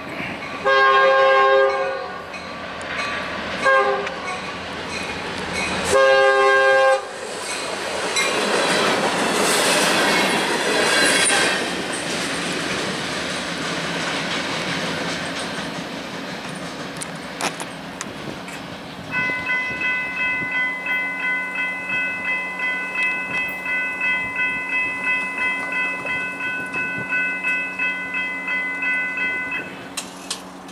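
Air horn of a Florida East Coast GP40-2 diesel locomotive sounding for a grade crossing: a long blast, a short one and another long one. The locomotive then passes with its diesel engine running and wheels rumbling on the rails. About two-thirds of the way in, a grade-crossing bell starts ringing steadily about twice a second and stops just before the end.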